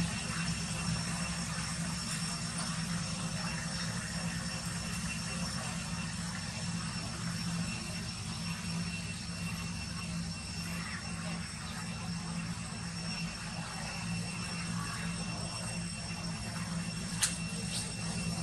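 A steady low hum, like an engine running, with faint steady high tones over it and one sharp click about a second before the end.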